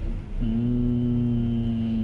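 A man's voice holding a steady low hum or drawn-out "mmm", starting about half a second in and held at one pitch for about two seconds.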